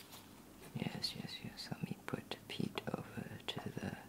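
A soft whispering voice starts about a second in, with short light clicks among it.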